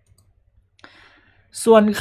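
A pause in a man's spoken narration, with a faint short noise about a second in, then his voice starts again near the end.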